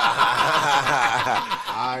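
Men laughing and chuckling together, with talk mixed in.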